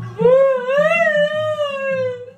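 A woman's long, high wailing cry, held for nearly two seconds, its pitch rising a little and then slowly sinking.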